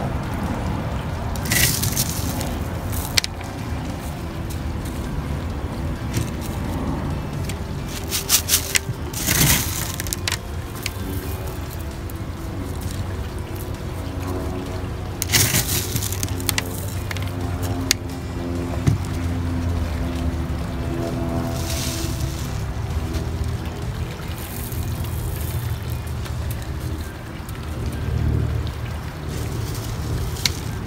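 Small rocks clattering as they are poured and set onto the soil of a bonsai pot as top dressing, in several short bursts of clicks, over steady background music.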